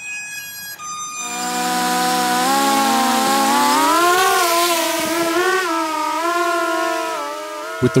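Electric motors and propellers of a four-motor folding-wing drone, flown as a quadcopter, spinning up and hovering: a multi-tone whine with rushing propeller wash, starting about a second in, its pitch rising and dipping as the thrust is adjusted.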